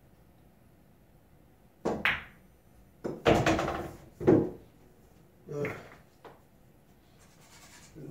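Pool shot: a cue tip strikes the cue ball about two seconds in. It is followed by a string of sharp clacks and knocks as the billiard balls collide, then a ball drops into a pocket and rolls down the table's ball return. The two loudest knocks come in the middle.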